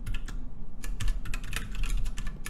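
Fast typing on a computer keyboard: an irregular run of quick key clicks as a line of code is rewritten.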